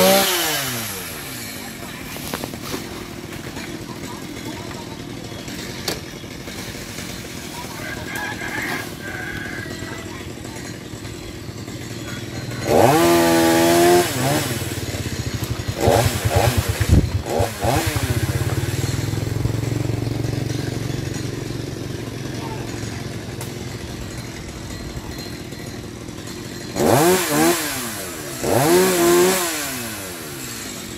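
Two-stroke chainsaw idling with the throttle blipped several times: a short rev at the start, a longer loud rev about a third of the way in, a few quick blips shortly after, and two revs near the end.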